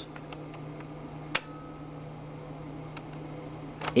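Marantz PMD-221 cassette recorder's tape transport on rewind: a low steady hum with one sharp mechanical click about a second and a half in and a few faint ticks. The rewind is stalling, which the owner puts down to the tape itself.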